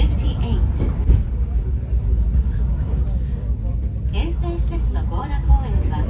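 Low, steady rumble of a railway car running along its track, heard from inside the passenger cabin.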